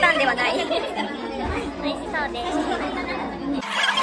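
Chatter of several voices talking over one another at a café table, breaking off abruptly just before the end.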